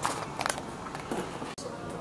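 Indistinct background voices in a showroom, with two sharp clicks in the first half-second and a momentary drop-out in the sound about three-quarters of the way through.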